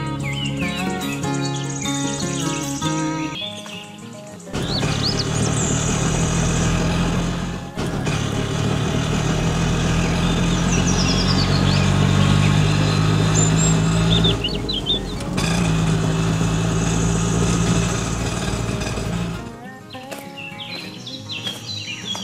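Acoustic guitar music for the first few seconds, then a small engine sound like an auto-rickshaw's running steadily for about fifteen seconds, dipping briefly twice. Birds chirp over it.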